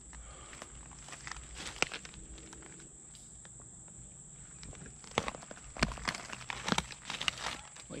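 Footsteps in flip-flops through dry leaf litter and twigs: mostly quiet for the first five seconds with a single crackle, then a run of crunching, crackling steps.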